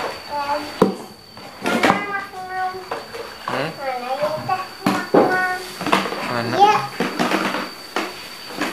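A young child's voice, vocalising without clear words. It is broken by a few sharp knocks as plastic toys are lifted out of a cardboard box.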